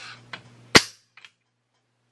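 A single sharp metallic click, with a couple of faint ticks around it.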